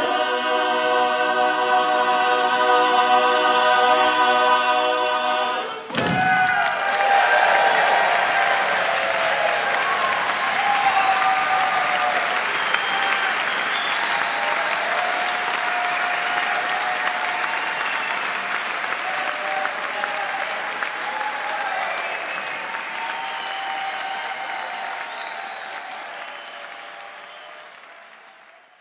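Mixed a cappella barbershop chorus holding its final chord for about six seconds, then cutting off sharply. The audience breaks into applause with shouts and whoops of cheering, which fades out near the end.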